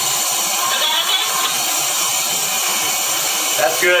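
A hookah dive air compressor runs steadily, feeding air into the sealed wooden hull for its pressure test, heard inside as a constant hiss and drone.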